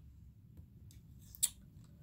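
Cards being handled on a table: a couple of faint ticks, then one brief, sharp scrape about one and a half seconds in.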